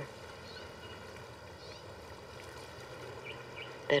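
Quiet outdoor ambience: a steady low hiss with a few faint, high bird chirps.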